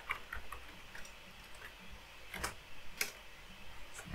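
A few faint computer keyboard keystrokes, light clicks spread over a few seconds, with two sharper clicks about two and a half and three seconds in.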